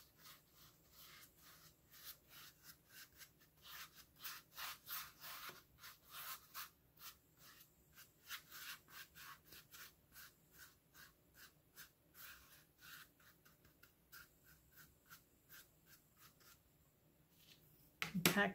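Paintbrush working a thick acrylic paint and baking soda paste onto a hollow plastic faux pumpkin: a run of faint, short scratchy strokes, several a second, that stops shortly before the end.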